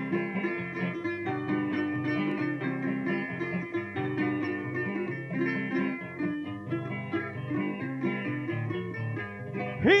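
Punto guajiro instrumental interlude between sung décimas: a plucked laúd and guitar play a bright melody with fast repeated notes over a strummed rhythm. Near the end a man's singing voice comes in on a rising note.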